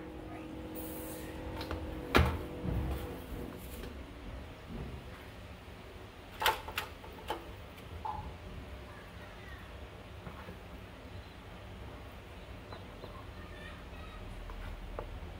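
A spatula scraping and knocking against a plastic mixing bowl as a wet bread pudding mix is scooped out into a foil baking pan. There is a sharp knock about two seconds in and three more around six to seven seconds, with light scraping between them.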